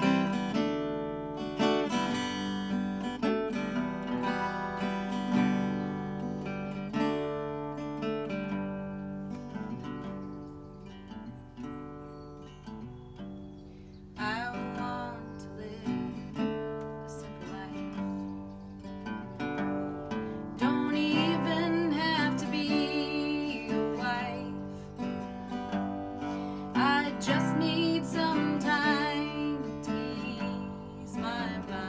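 Small-bodied acoustic guitar played as a song's intro, with a woman's singing voice joining past the middle.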